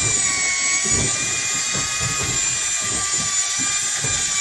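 Electric deep-drop fishing reel's motor whining steadily as it winches in line under heavy load from a hooked fish, its pitch wavering only slightly.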